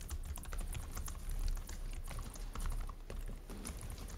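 Irregular clicking of typing on a computer keyboard, picked up by a courtroom microphone over a steady low hum.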